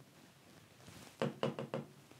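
Four quick, faint knocks a little over a second in: a pen tapping on a large touchscreen display.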